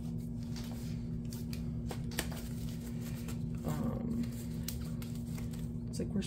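Paper envelopes and a booklet of scratch-off cards being leafed through by hand, giving a few light clicks and rustles over a steady low hum.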